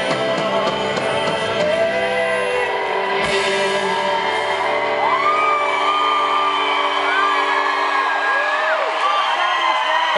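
A live rock band's final held chord rings out and fades, its low end dropping away partway through, while the crowd cheers and whoops at the end of the song.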